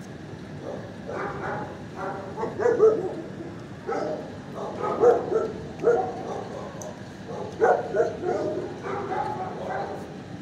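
Dogs barking repeatedly in irregular clusters, several sharp barks a few seconds apart, the loudest about three, five and eight seconds in.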